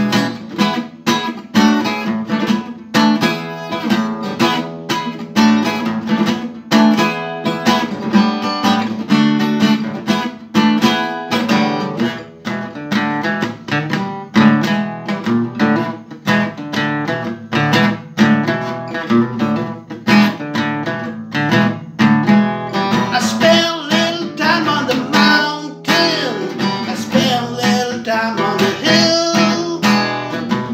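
Acoustic guitar strummed in a steady rhythm, chords ringing between strokes, in an instrumental stretch of a song.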